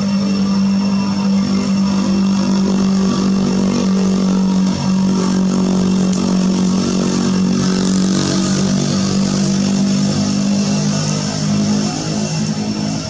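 A motor engine running steadily, a low even drone that dips slightly in pitch near the end.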